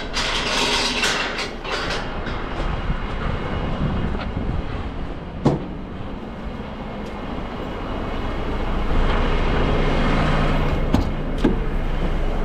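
Refuse truck's diesel engine idling steadily, louder in the last few seconds. A metal gate rattles and clanks during the first couple of seconds, and a few sharp clicks come near the end.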